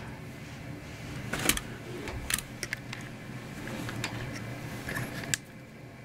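Scattered light clicks and small knocks of handling, with several short sharp ticks through the middle, over a low steady room hum.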